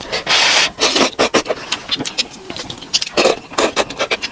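Close-miked slurping of instant noodles in soup, with one long slurp near the start followed by wet chewing and several shorter slurps.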